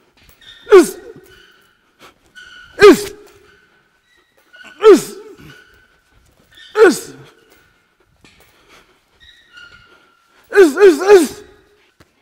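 A boxer's sharp, voiced exhales as he throws punches, each a short falling hiss-and-grunt. Four come singly, about two seconds apart, then three in quick succession near the end as a combination.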